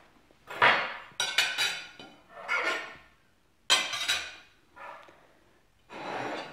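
Metal cutlery clinking and scraping against a white dinner plate as a fork and knife are picked up and laid on it. There are about five short clatters, some with a brief metallic ring.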